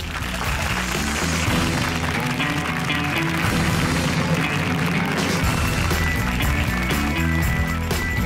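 The quiz show's closing theme music, a dense, steady piece with a moving bass line, playing at an even level.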